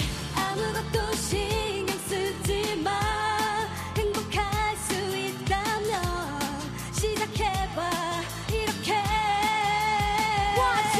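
K-pop girl group singing live into handheld microphones over an upbeat dance-pop backing track with a steady, even drum beat and bass line.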